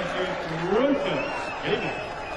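A darts referee's man's voice over the arena's public-address system, calling out a few slow, drawn-out words as the leg ends.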